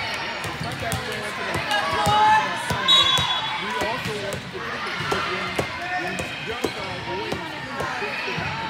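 Busy volleyball hall: balls thumping and bouncing on the courts, many sharp knocks in quick, irregular succession, over a bed of overlapping chatter from players and spectators. A short, high whistle blast sounds about three seconds in.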